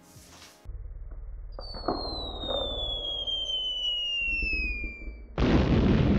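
Edited-in cartoon bomb-drop sound effect: a low rumble, then a long whistle falling steadily in pitch for about four seconds, cut off by a loud explosion near the end.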